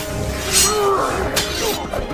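Film fight sound effects: two sharp, crashing hits, about half a second and a second and a half in, over a music score.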